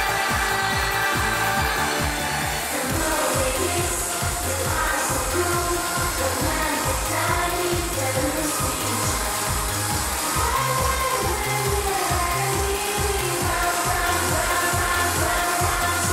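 Idol pop music with a steady dance beat and a woman's sung vocal line over it; the beat pattern changes about three seconds in.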